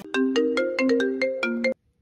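A smartphone ringtone playing a quick melody of short, bright notes, which cuts off abruptly near the end.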